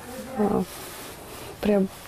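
Only speech: a woman's voice making two short sounds, about half a second in and again near the end, with a faint steady hiss between them.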